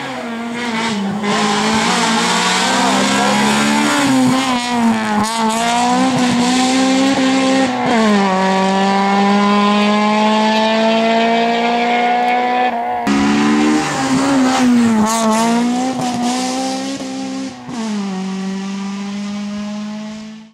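Honda Civic rally car's four-cylinder engine driven hard at high revs, climbing in pitch through each gear and dropping back at the shifts. There is one abrupt break about two-thirds of the way through.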